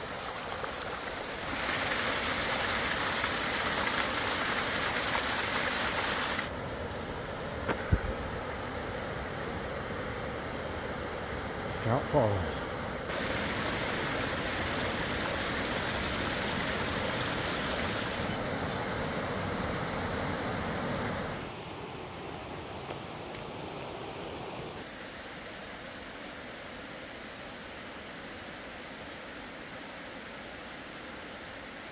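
Rushing water of a small mountain stream and little waterfalls spilling over rocks: a steady rush that changes in loudness and tone several times.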